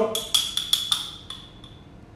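A metal spoon tapping and scraping quickly against a small glass jar as pesto is scooped out of it, the jar ringing with a thin high note. The taps come in a fast run for about a second and a half, then stop.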